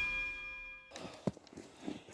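Rock intro music fading out on a held chord, cut off abruptly about a second in, followed by a couple of faint knocks.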